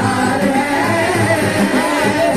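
A qawwali group of boys and young men singing together into microphones, several voices on one melody with long, bending sung lines.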